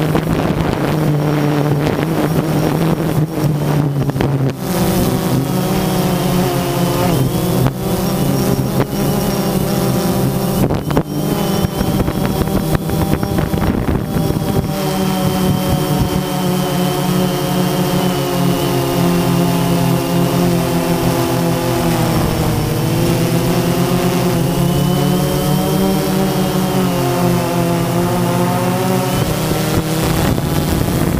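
Quadcopter drone's electric motors and propellers running, a steady whine and buzz whose pitch drifts up and down as the motors change speed, with a noticeable dip about two-thirds of the way through. It is heard close up from the camera on the drone itself, with some wind on the microphone.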